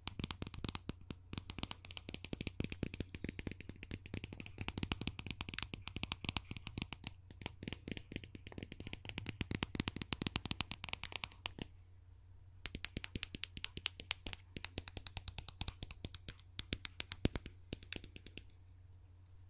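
Fingers and a small handheld tool scratching and tapping on a foam-covered microphone close up, making a dense, fast crackle of clicks. The crackle pauses for about a second near the two-thirds mark, then starts again, over a steady low hum.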